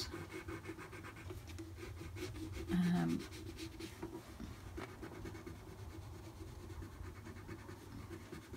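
Soft 4B water-soluble graphite pencil faintly scratching and rubbing across cold-pressed watercolour paper as dark tones are worked into the painting.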